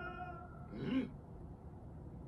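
An animated character's long, wavering cry of "Mama!" fades out in the first half second. About a second in comes a short cry that rises and then falls in pitch.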